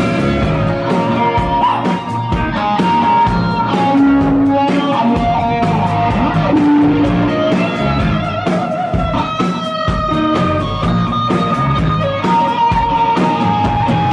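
Live rock band playing loud: electric guitars over drums and bass, with a lead line of long held notes that bend in pitch and no singing.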